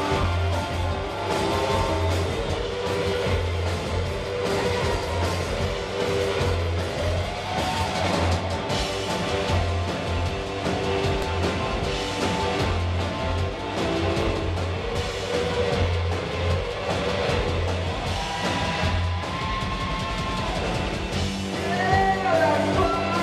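Live rock band playing an instrumental passage on electric guitars, bass and drums, with a low bass note pulsing in a steady rhythm under sustained guitar lines.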